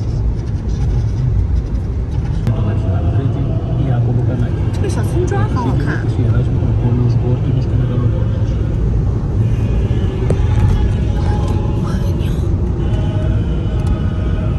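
Steady low road and engine rumble heard inside a car cabin at highway speed, with faint talk in the background.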